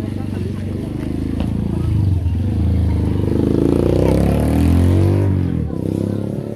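A motor vehicle engine running close by, its pitch climbing from about three seconds in and dropping away shortly before the end. People's voices are heard with it.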